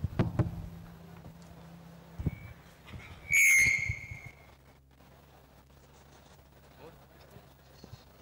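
Low thumps and knocks on a PA microphone, then a brief, loud, high-pitched feedback squeal about three and a half seconds in.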